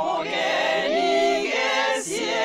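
Unaccompanied vocal harmony: one woman's voice multitracked into several parts, singing held notes together as a small a cappella choir.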